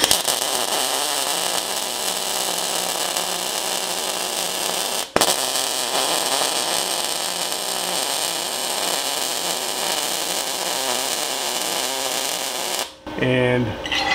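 MIG welding arc from a Chinese MIG 250G inverter welder running 0.030 wire, laying a bead on eighth-inch steel angle iron: a steady crackle that breaks off for an instant about five seconds in, picks up again and stops about a second before the end. The weld comes out a smooth, textbook bead.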